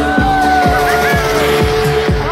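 Electronic dance music from a DJ set played loud over a sound system: a kick drum about twice a second under held synth tones, one of them sliding slowly down in pitch.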